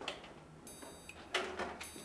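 A door being pushed open: a few sharp knocks, one at the start and a louder one about a second and a half in.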